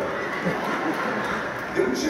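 A theatre audience laughing, with a man's voice faintly through the hall's PA speakers.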